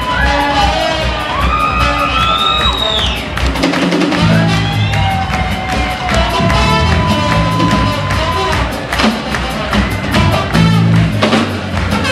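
A live band playing a soul groove: drum kit and electric bass under sliding melodic lines from trombone and voice, with some audience cheering mixed in.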